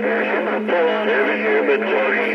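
A distant station's voice heard through a Stryker SR-955HP radio's speaker, thin and narrow-band with no clear words, over a steady low tone. The signal is fading in and out with changing skip conditions.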